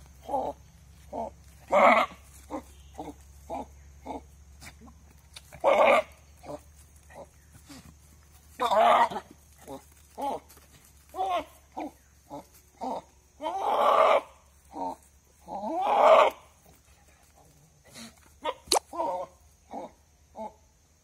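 Goats calling: short, repeated grunt-like calls, broken by longer bleats at about 2, 6, 9, 14 and 16 seconds.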